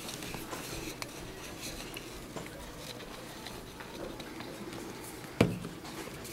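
Faint handling of a plastic glue bottle and a cardboard rocket body tube, with light ticks and rustles, then one sharp knock about five seconds in as the glue bottle is set down on the table.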